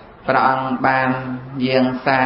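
A Buddhist monk chanting Pali verses in a man's voice, held on a nearly level pitch in long phrases with short breaks between them. The chant begins about a quarter second in.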